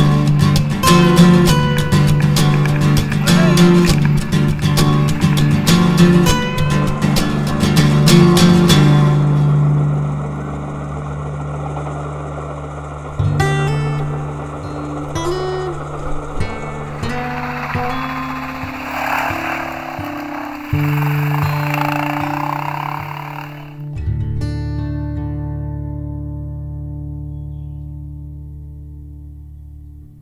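Guitar music: fast rhythmic strumming for the first several seconds, then held chords that change every few seconds and slowly fade away near the end.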